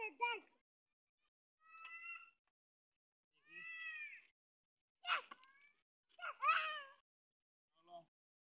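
Several short, high-pitched vocal calls, one every second or two, each bending in pitch, with silence between them.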